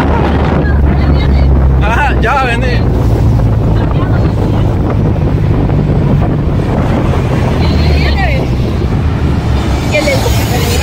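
Wind buffeting the microphone over the steady low rumble of the engine and tyres, heard from the open bed of a moving pickup truck.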